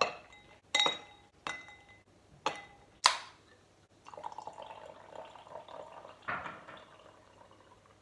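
Ice cubes dropped into a stemless drinking glass, five sharp clinks with the glass ringing after each. From about four seconds in, lightly sparkling water is poured from a can into the glass over the ice in a steady splashing stream.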